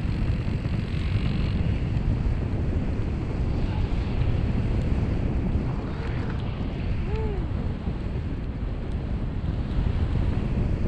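Paramotor in flight: heavy wind rushing over the microphone, with the backpack engine and propeller running steadily underneath. A brief rising-and-falling tone sounds once about seven seconds in.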